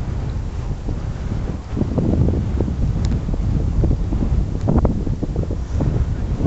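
Wind buffeting the camera microphone in uneven gusts, a low rumble that grows stronger from about two seconds in.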